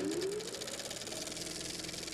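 Film projector starting up: its motor whine rising in pitch over the first second as it comes up to speed, under a fast, even mechanical clatter.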